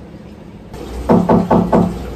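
Four quick knocks, about four a second, starting a little over a second in.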